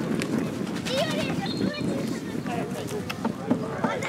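People talking indistinctly near the microphone over a steady outdoor background noise.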